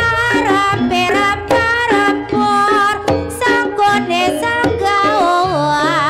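Live Javanese ebeg/barongan accompaniment: a wavering, ornamented lead melody over drum strokes and a low gong, played continuously with a steady beat.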